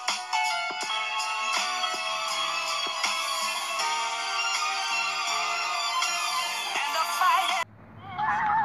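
Background music with a steady beat and layered melody, cutting off suddenly near the end.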